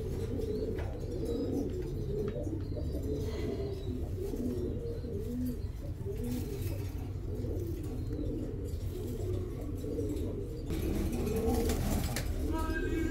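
Domestic pigeons cooing continuously, several birds' low rising-and-falling coos overlapping, over a steady low hum.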